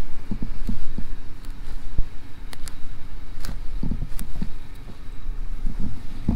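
Gusty wind buffeting the microphone as a fluctuating low rumble, with a few soft thumps and rustles scattered through it.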